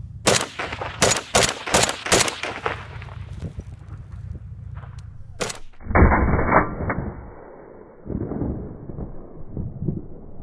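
Kalashnikov-type assault rifle fired in rapid single shots, about seven sharp cracks in the first two and a half seconds and another a few seconds later. From about six seconds on, more firing sounds duller and muffled.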